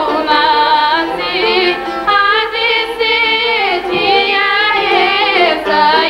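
Two women singing a Bulgarian folk song together in the open-throated folk style, the melody bending with quick ornaments.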